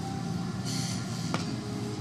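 A steady low hum, with a short soft scratch of a plastic stylus drawing on a toy drawing slate about two-thirds of a second in, and a single light click a little later.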